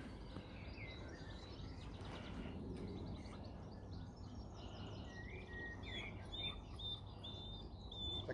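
Quiet open-air ambience: a low steady rumble with a small bird chirping. Its short high notes come at about two a second in the second half.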